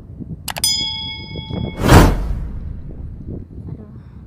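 Subscribe-button overlay sound effect: a mouse click about half a second in, then a bell-like ding that rings for about a second, then a loud whoosh about two seconds in that fades out.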